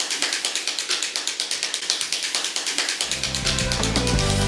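A hand-spun ratchet noisemaker whirled round, making a fast, even clicking of about eight clicks a second. Music with a low sustained tone comes in near the end.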